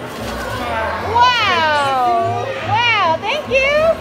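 A young child's high-pitched wordless calls: one long falling squeal, then a few shorter rising-and-falling squeals, over background music.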